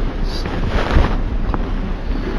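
Steady rushing, rumbling noise on the microphone, heaviest in the low end, like wind buffeting it.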